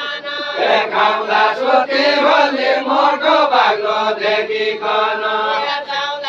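A group of men singing a deuda folk song together, unaccompanied, in a chanting chorus. A fuller, lower mass of voices comes in about half a second in and carries the line on.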